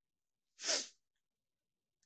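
A man's single short, noisy burst of breath through the nose or mouth, about half a second in and lasting under half a second.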